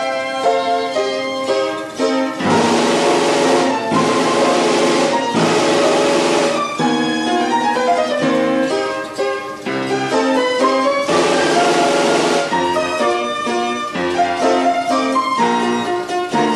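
Imhof & Mukle 'Lucia' orchestrion playing a tune on its pipes, with three stretches of louder percussion noise over the melody.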